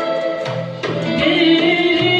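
A Turkish classical music ensemble with violin and oud playing a şarkı in makam Nihâvend, accompanying a woman singing a held, wavering note that comes in about a second in.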